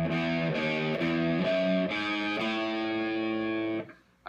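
Gibson Les Paul electric guitar played through a distorted amplifier: a slow phrase of about six notes, one every half second or so, with the last note held for more than a second and then cut off just before the end. It is a measure of a guitar solo played slowly as a demonstration.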